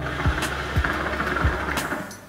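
Water in a Piranha hookah's base bubbling steadily as smoke is drawn through the hose in one long pull.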